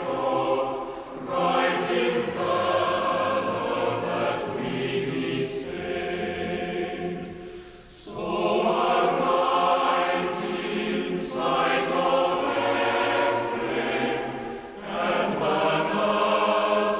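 A choir singing as closing music, in phrases with short breaks about a second in, around eight seconds in, and shortly before the end.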